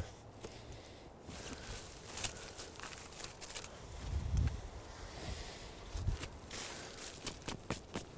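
Boots stepping and shuffling through wet leaf litter on the forest floor, with scattered leaf crackles and a couple of dull footfall thumps about four and six seconds in.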